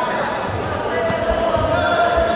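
A few dull thuds from two jiu-jitsu fighters grappling on the mat, with voices calling out in a reverberant gym hall.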